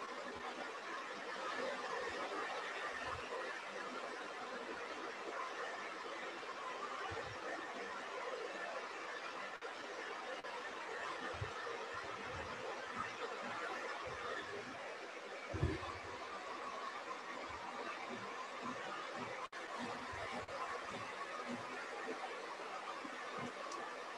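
Steady hiss and background noise from an open microphone on a video call, with scattered low bumps and one louder thump about fifteen seconds in.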